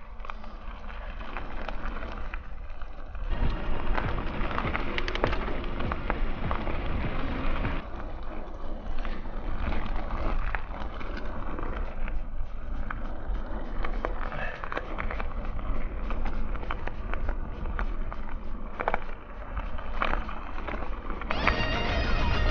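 Mountain bike descending a dirt forest singletrack: steady rolling noise of the tyres on dirt, with frequent small rattles and clicks from the bike over the bumps and a low rumble on the microphone. Near the end a pitched sound starts.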